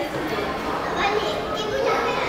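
Indistinct chatter of children's voices in a busy indoor space.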